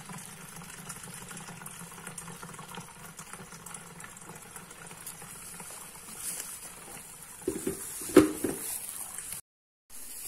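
Thick blended turmeric-and-ginger pulp pouring from a blender jug and trickling through a plastic coarse strainer into a jug, a steady wet sloshing. A sharp knock about eight seconds in is the loudest sound, and the sound cuts out briefly just before the end.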